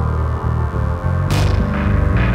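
Electronic hip-hop track played live from Ableton Live and an Akai MPD32 pad controller: a deep, distorted bass line in repeated short notes under a sustained synth tone. A crash-like burst of noise hits a little over halfway through, with a smaller one near the end.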